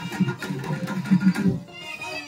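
Live Pandari bhajan band music: dolu and dappu drums beat a lively, uneven rhythm under a keyboard melody. The sound thins out briefly near the end.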